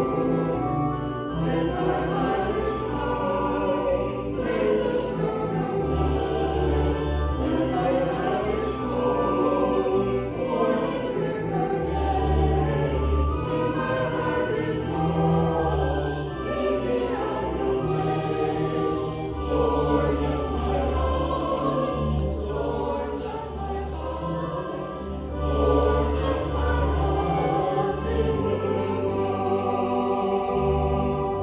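Small mixed church choir of men and women singing a sacred choral piece together. Sustained low bass notes hold underneath and shift every second or two.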